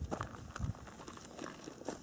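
Faint scratching and scraping of a small hand digging tool raking gravelly soil aside, a layer at a time, over a buried metal-detector target.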